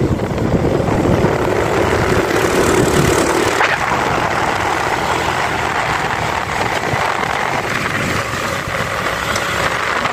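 Honda Dio scooter's engine running steadily while riding, with road and wind noise. A steady engine note fades out about three and a half seconds in.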